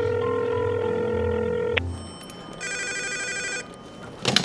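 A telephone call ringing through: a steady ringback tone for about two seconds, then a desk telephone's electronic ringer trilling for about a second before it is picked up.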